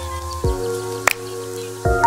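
Sampled music played live on a Roland SP-404 sampler: sustained chord tones that switch to a new chord about half a second in and again near the end, with a sharp click about a second in.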